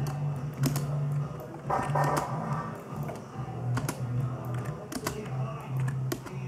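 Typing on a computer keyboard: irregular key clicks, over a low, uneven drone.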